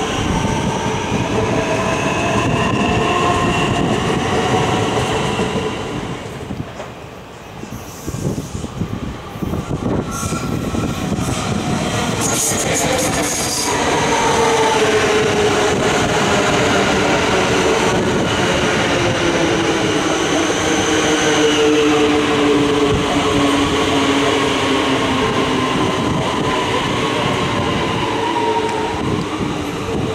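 Electric motor whine and wheel-on-rail noise from Melbourne HCMT electric metro trains. The first train's whine rises slightly as it pulls away and fades about seven seconds in. The next set then comes alongside, its whine falling steadily in pitch as it slows.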